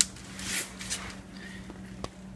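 Handling and rustling noise as a camera is moved about under a car seat, with a sharp click at the start and a faint steady hum underneath.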